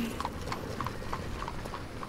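Steady clip-clop of hard steps on a street, about three or four a second, over a low background rumble.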